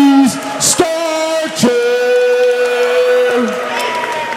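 A fight announcer's voice stretching out a fighter's name in loud, drawn-out syllables, the last held for nearly two seconds before its pitch drops.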